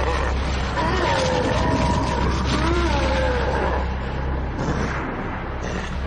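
Cartoon monster's voice from an anime soundtrack: drawn-out growling and groaning that wavers in pitch over a steady low rumble, dying away about four seconds in.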